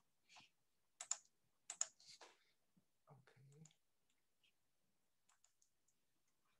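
Faint computer keyboard and mouse clicks, a few quick ones in the first half and a few fainter ticks near the end.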